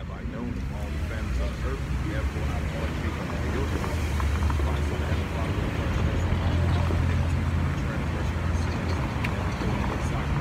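Street traffic with a vehicle engine running close by: a low, steady hum that builds over the first few seconds and is loudest past the middle.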